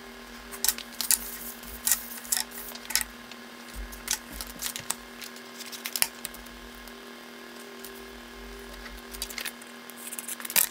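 Photo prints being picked up, shuffled and set down on a tabletop: scattered light clicks and paper rustles in short clusters, over a steady low hum.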